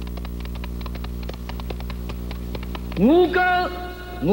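Rapid clattering of galloping horse hoofbeats, a sound effect, over a low steady hum. About three seconds in, a man's voice breaks in with a long sung cry that rises, holds and falls.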